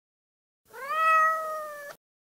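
A single long meow-like call that rises in pitch, holds steady for about a second, and cuts off abruptly near the end.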